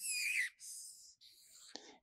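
A broad felt-tip marker drawn along paper in three long strokes, a scratchy hiss. The first stroke carries a falling squeak of the tip.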